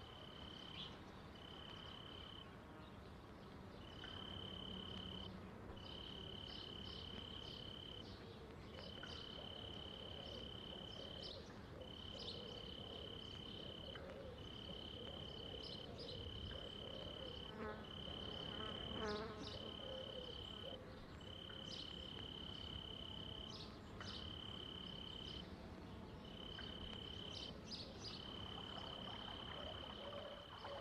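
A singing insect trilling one steady high note in repeated bursts of one to two seconds with short breaks between them, over faint outdoor background noise with a few short high chirps.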